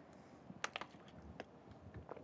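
A few faint, scattered computer keyboard clicks, about four key presses in two seconds.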